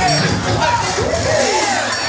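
Loud DJ music played over a sound system in a hall, with a vocal line over the beat and crowd noise underneath.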